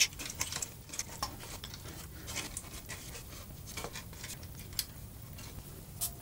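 Faint, scattered light clicks and taps of small tools and parts being handled at a workbench, with one sharper tick a little before the end.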